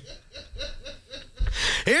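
Men chuckling: a run of short, quiet laugh pulses, about six a second, ending in a short breathy burst.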